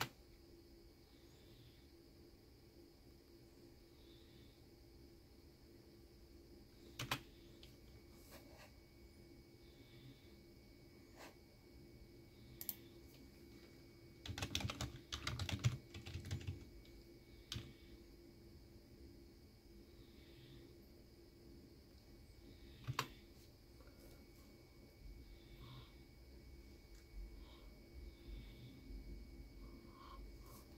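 Computer keyboard typing a login password: a quick run of keystrokes lasting about two seconds, halfway through. A few single clicks fall before and after it, over a steady faint hum.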